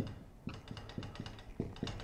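Dry-erase marker tapping and scraping on a whiteboard as small strokes are drawn: a run of quick light taps, irregularly spaced.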